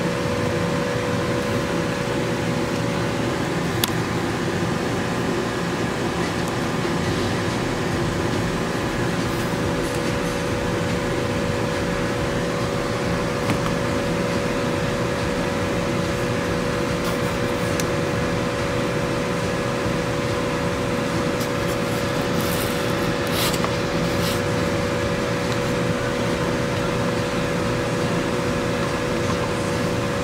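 Cordless drill running steadily at one constant speed with a steady whine, spinning the channel-selector encoder shaft of a Stryker CB radio as a wear test.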